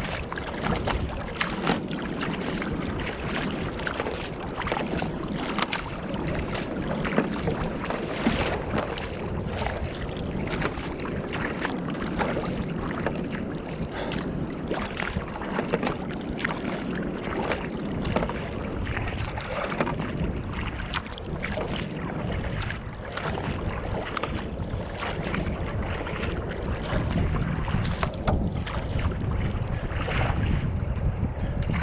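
Water rushing and splashing against the bow of a Fenn Bluefin-S surfski as it moves through light chop, with frequent short splashes, and a low rumble of wind on the microphone.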